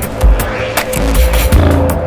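Electronic background music with a driving beat of about four hits a second over heavy bass.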